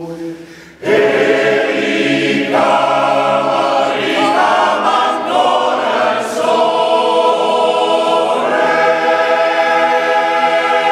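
Male voice choir singing in harmony: a soft passage dies away, then about a second in the full choir comes in loudly on held chords that shift several times.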